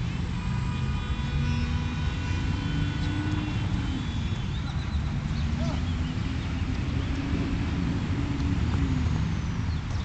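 Steady low engine rumble with a slowly wavering hum, as of distant motor traffic.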